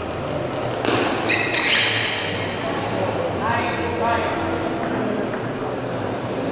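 A table tennis rally ending: a sharp hit about a second in, then high-pitched shouts and a short spell of voices cheering the point.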